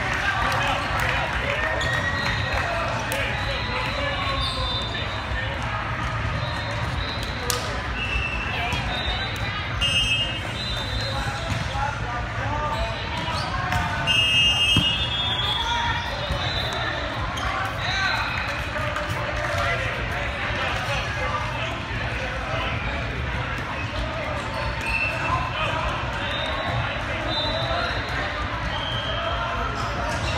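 Echoing din of a large multi-court volleyball hall: many overlapping voices, volleyballs being hit and bouncing on the court floor, and brief high-pitched tones now and then.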